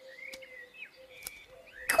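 Birds chirping softly in the cartoon's countryside soundtrack, over a faint steady tone, with a couple of light clicks.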